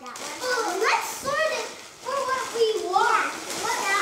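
Young children talking and exclaiming in high-pitched voices, in short bursts throughout.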